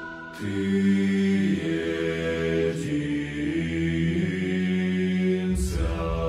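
Male a cappella choir singing a slow hymn in sustained chords, low voices holding long notes and shifting harmony every second or so. A deep bass enters near the end. It follows a solo voice that fades out at the start.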